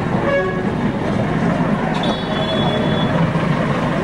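Street traffic with a steady rumble and high-pitched vehicle horns: a short toot at the very start, then one horn held for about a second from about two seconds in.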